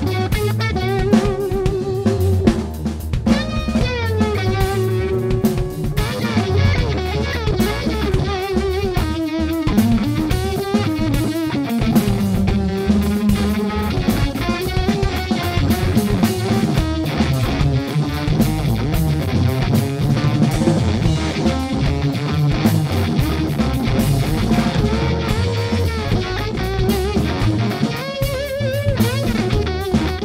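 Live rock band playing: a lead electric guitar solo with wavering, bending notes over bass guitar and a drum kit.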